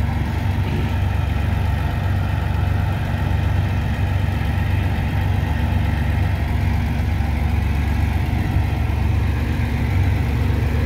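The engine of a sand dredger running steadily, driving the pump that sucks water and sand out of a barge's load. A steady low drone that holds the same speed throughout.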